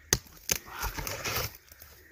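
Two sharp knocks about a third of a second apart near the start, followed by faint rustling.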